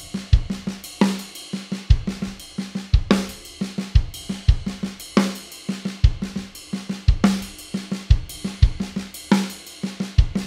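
Tama Star Bubinga drum kit playing a slow linear triplet groove with a half-time shuffle feel. Hi-hat, snare drum and bass drum are each struck alone in turn, in a 24-hit two-bar phrase that repeats, with the snare's main backbeat on beat three.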